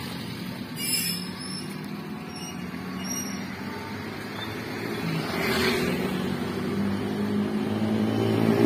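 A motor vehicle engine running steadily on a street, getting louder over the last few seconds, with a short swell of passing traffic just past the middle.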